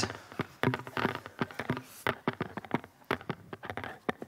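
Irregular taps and knocks of footsteps on a hollow stage floor, several a second, with faint voices behind.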